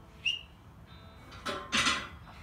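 Strained, effortful gasping breaths from a woman bending a half-inch steel bar by hand, loudest near the end as she forces the last bend, over faint background music.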